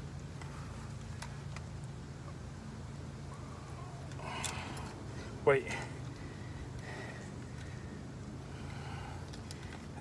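A vehicle engine idling, heard as a steady low hum.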